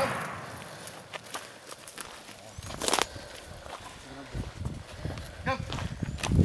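The echo of a rifle shot rolling away and dying out over the first second, followed by faint rustling and footsteps with a single sharp crack about three seconds in.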